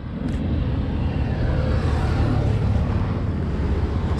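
Steady low rumble of a vehicle's engine and road noise while it is driving.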